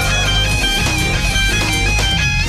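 Live rock band playing an instrumental passage: an electric lead guitar holds long, slightly wavering and bending high notes over a steady bass line and drums.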